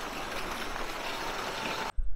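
A heavy jet of water from a water truck's hose pouring and splashing into a nearly full above-ground pool: a steady rushing splash that cuts off suddenly near the end.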